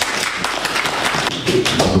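A quick, irregular series of sharp taps and knocks, close and fairly loud, with a man's voice coming back in near the end.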